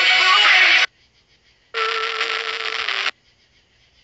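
Music from an FM station playing through a smartphone's FM radio. It cuts off abruptly about a second in. After a short silence a second burst of broadcast sound plays for about a second and a half, then stops as the radio is switched off.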